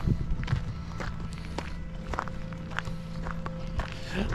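Footsteps on a gravel path at a steady walking pace.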